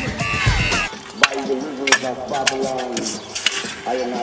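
A rock song with singing that cuts off abruptly about a second in. After it come a few sharp clinks of shovels working soil and stones, with men's voices talking.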